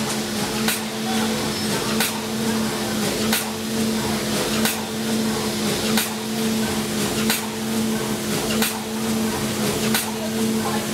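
Automatic premade-pouch (doypack) packing machine running: a steady motor hum with a sharp clack from its mechanism about every 1.3 seconds as it cycles through its pouch stations.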